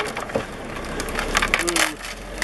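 Old wooden shed boards cracking and splintering as a Caterpillar D8 bulldozer pushes into the shed, a run of sharp snaps that grows denser in the second half. The dozer's low diesel engine rumble comes up underneath about a second in.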